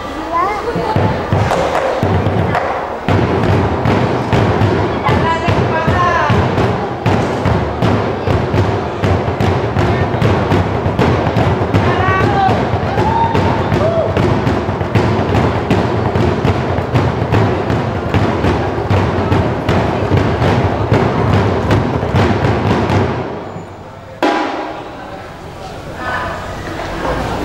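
Ensemble of Minangkabau tambua barrel drums played in a fast, dense, steady beat. The drumming stops abruptly about 23 seconds in, and a single stroke follows shortly after.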